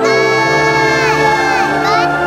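A little girl calling out in long, drawn-out calls, "Uncle... come...", each note held and then falling away, over steady background music.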